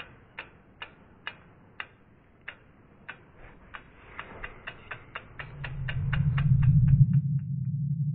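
Logo-animation sound effects: a row of sharp ticks, about two a second, that speed up from about three seconds in and die away near the end. Under them a low hum swells from about five seconds in, peaks, then holds on more quietly.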